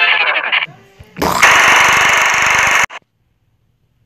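The tail of a TV channel ident jingle ends in the first second. About a second later comes a loud, harsh burst of noise with a fast rattle, lasting about a second and a half and cutting off suddenly.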